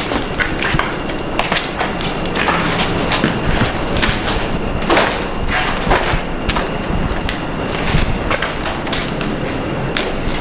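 Footsteps on concrete stairs and a gritty concrete floor: irregular scuffing steps, about one or two a second, with some scraping.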